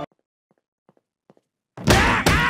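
Music cuts off at the start, leaving near silence broken by a few faint ticks. Near the end a loud thud starts as a cartoon character begins falling down a staircase.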